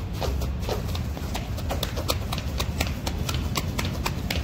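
Feet striking a treadmill belt in a steady running rhythm, about four quick footfalls a second, over a low steady rumble.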